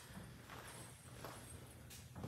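Faint footsteps on a concrete garage floor, with a sharper step near the end.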